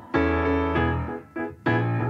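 Piano playing a few sustained chords of a pop ballad's accompaniment, with no singing. A fresh chord is struck about a second and a half in.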